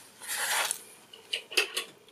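Small 3D-printed plastic test pieces being handled: a soft rubbing sound about half a second in, then several light clicks as the pieces tap together near the end.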